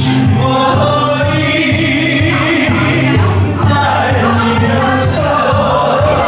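A Korean trot song played back in a rehearsal room, with a group of voices singing along in unison.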